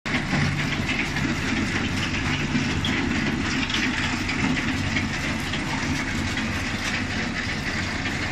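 Potato harvester running in the field: a steady engine hum under continuous rattling and clattering from its conveyors.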